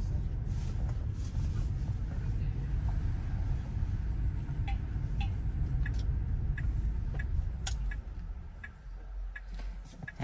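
Low road and tyre rumble inside a Tesla's cabin as it drives, fading near the end as the car slows. From about halfway through, a turn signal ticks roughly one and a half times a second.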